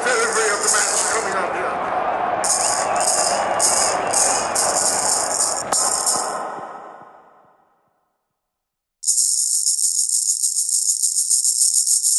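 Rattle of a blind-cricket ball, a hard plastic ball with metal bearings inside, in a quick rhythmic run of bursts over a murmur of voices that fades away. After a second or so of silence comes a steady, continuous rattle.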